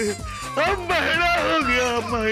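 A man's strained, wordless whining wail that wavers up and down in pitch, over comic background music.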